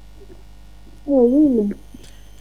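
A person's voice: one short wordless call about a second in, its pitch wavering up, down and up again, over a steady low hum.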